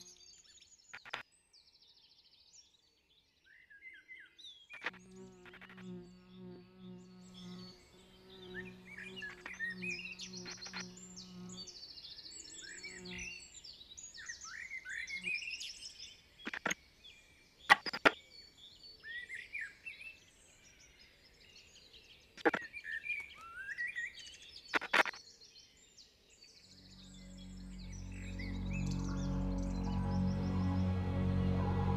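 Birdsong of many short chirps and rising whistles, broken by a few sharp clicks. A low, steady musical drone sounds under the birds for several seconds early on, and music swells up near the end.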